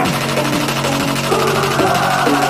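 Background hip-hop song playing between rapped lines, with a sustained synth bass and a steady beat.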